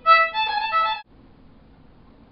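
Violin played with the bow: a short phrase of a few notes lasting about a second, cut off suddenly, followed by faint room tone.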